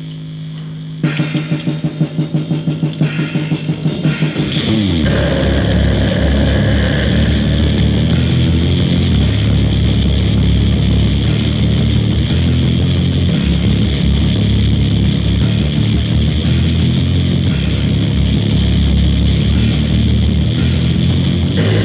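A metal band's demo recording starts a track: a single held electric guitar note, then a fast, pulsing guitar riff from about a second in, and the full band with drums and bass joining at full loudness about five seconds in.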